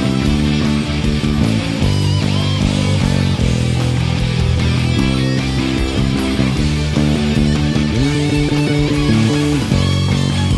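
Electric bass played along with a full-band rock song recording, the bass line heavy in the low end under guitars and a singing voice.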